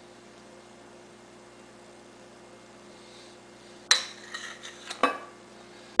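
A metal spoon clinking against a stainless steel bowl while chocolate pudding is scraped out. A quiet stretch of faint hum comes first, then a sharp clink about four seconds in, a few lighter taps, and another clink about a second later.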